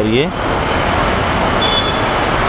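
Steady roadside traffic noise, an even rush of passing vehicles, with a brief faint high beep near the end.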